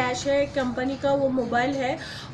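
Only speech: a woman talking in Hindi.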